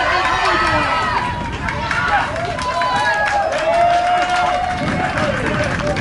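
Rugby spectators shouting and cheering from the sideline, several voices overlapping, one long held call near the middle.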